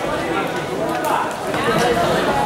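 Voices: several people talking and calling out at once around a kickboxing ring, with no single speaker clear.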